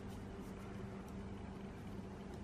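Quiet steady background hum and hiss, with a few faint light ticks from metal knitting needles and yarn being worked.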